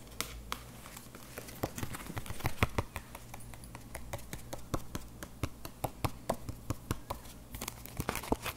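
Fingers tapping and clicking on a handheld oracle card, irregular sharp taps, a few at first and then about three or four a second.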